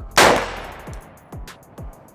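A single 5.56 rifle shot from a CMMG Dissent, fired just after the rifle is charged, with its echo trailing off over about a second.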